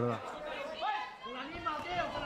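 Speech only: a man's voice finishing a word, then other voices chattering.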